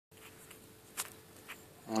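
Faint steady hum, with a sharp click about a second in and a softer one half a second later.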